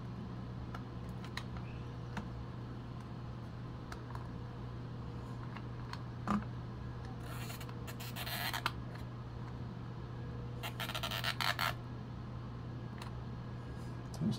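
Plastic Single-8 film cartridge handled and rubbed against the camera's film chamber: a click about six seconds in, then two scraping rustles of about a second each, over a steady low hum.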